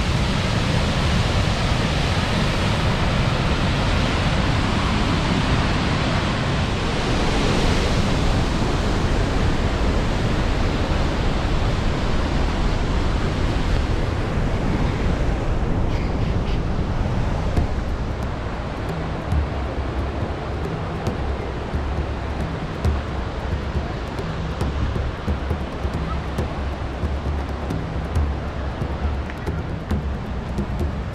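Steady roar of the Krimml Waterfalls, a large mountain waterfall of rushing, crashing water. About two-thirds of the way in it gets somewhat quieter and stays even.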